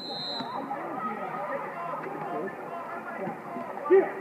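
Overlapping chatter of spectators at a water polo game, with a short, high referee's whistle blast right at the start and a sudden loud shout near the end.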